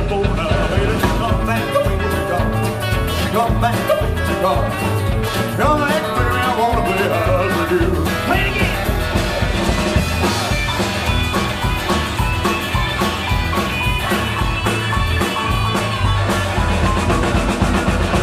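Live rockabilly band playing an instrumental break: electric lead guitar over a driving bass and drum-kit rhythm, with acoustic rhythm guitar and keyboards.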